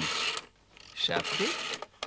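Rotary telephone dial whirring as it spins back after being turned, twice: a short run at the start and a longer one from about a second in.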